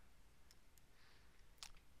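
Near silence: room tone with a few faint clicks, the clearest about one and a half seconds in.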